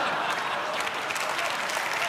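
A large audience in a theatre hall applauding steadily.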